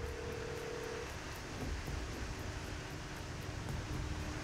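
Steady city street background: a distant traffic hum with no distinct events.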